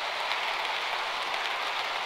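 Model railway coaches running along the track: a steady, even rolling hiss with no distinct clicks.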